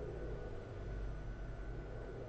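Quiet room tone: a faint steady low hum with light hiss, no distinct sounds.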